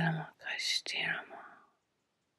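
A woman's voice: a short voiced sound that falls in pitch, then a breathy, whispered sound with a small mouth click, fading out before the end.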